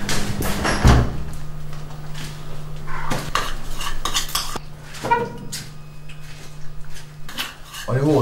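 Cutlery clinking and scraping on a plate during a meal, in irregular light clicks, with a louder knock about a second in and a steady low hum underneath.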